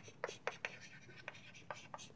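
Chalk writing on a blackboard: a quick, irregular run of short taps and scratches, about five a second, as letters are written.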